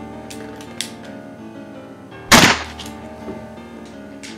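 A single pistol gunshot a little over two seconds in, sharp and with a short ringing tail, over steady background music.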